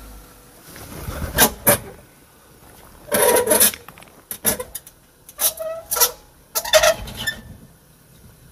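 Jeep Wrangler JL Rubicon crawling down a granite rock ledge, its tyres and underside scraping and knocking on the rock in a string of short, sharp bursts about a second apart, with the engine running low underneath.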